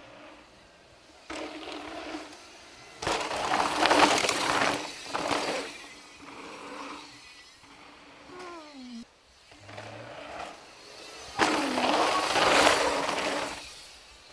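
Downhill mountain bike's knobbly tyres rolling and skidding on a dirt flow trail, coming in loud rushes as the rider passes: one about three seconds in lasting a couple of seconds, and another about eleven and a half seconds in.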